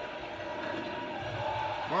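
Faint television audio of the baseball broadcast under a steady hum, with a distant voice coming in near the end.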